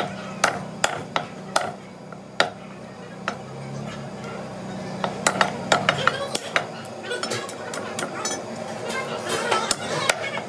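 A meat cleaver chopping goat meat and bone on a wooden log chopping block. It makes sharp knocks: several in the first couple of seconds, a pause, then a quicker run of strikes from about five seconds in.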